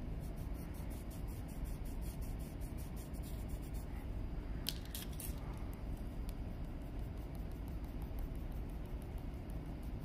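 Coloured pencils scratching on paper in quick, even strokes, with a few sharp clicks about five seconds in as one pencil is put down and another picked up, over a steady low rumble.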